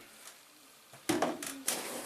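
Handling noises: after about a second of quiet, a run of loud rustles and knocks as product bottles and containers are moved about, set down and picked up.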